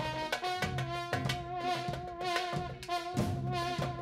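Live band jam: a trombone playing long held notes with a slight waver over a steady drum-kit beat.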